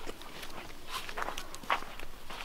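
Footsteps of a person walking on a sandy dirt road at a steady walking pace.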